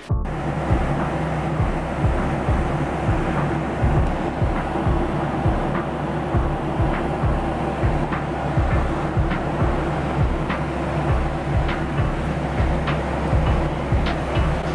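Airliner cabin noise in flight: a steady engine drone with a low hum, broken by frequent short soft knocks.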